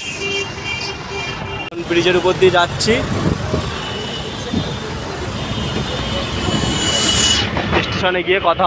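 Busy road traffic heard from a vehicle moving through it: engine and tyre noise from buses and motorbikes, with horns sounding.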